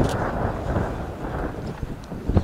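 Wind buffeting the microphone of an outdoor field recording, with one sharp hand clap right at the start.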